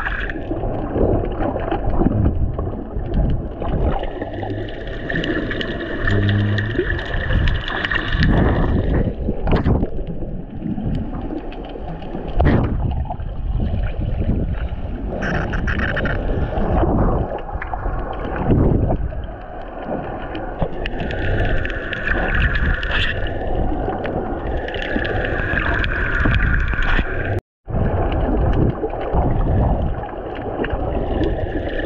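Muffled underwater sound from an action camera held just below the surface: water sloshing and gurgling around the camera housing, with a few dull knocks. The sound cuts out for a moment near the end.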